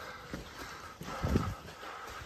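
Footsteps on a dirt and stone path: a few dull thuds, the loudest a little past midway.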